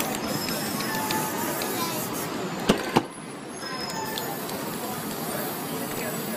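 Aerosol spray paint hissing from a can onto a board. Two sharp knocks come near the middle, about a third of a second apart.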